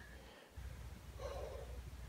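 A pause between spoken phrases: a low steady hum, with one faint, short, soft breath a little past the middle.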